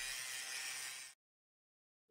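Angle grinder grinding quarter-inch steel, a faint hissing grind for about a second that then cuts off suddenly into complete silence.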